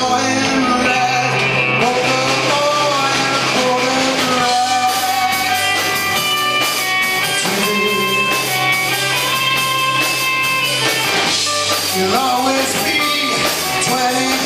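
Live rock band playing a cover song: singing over electric guitars and drums, with long held guitar notes from about five seconds in.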